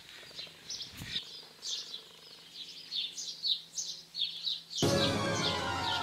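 Small birds chirping, a few short high notes every second, with a single click about a second in. Near the end, music starts abruptly and plays on under the chirps.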